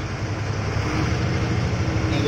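Ashok Leyland bus's diesel engine running steadily at about 1,300 to 1,400 rpm, a low even rumble heard from inside the cab.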